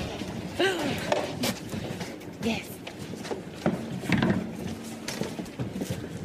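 Short, indistinct bits of voices and murmuring in a reverberant hall; the band's music has stopped.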